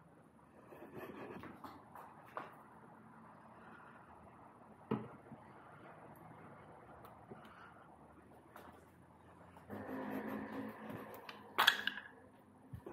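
Faint handling noise as an aftermarket electric motor is worked into a Surron dirt bike frame: light scrapes and a knock about five seconds in, busier handling a little before the end, then one sharp click.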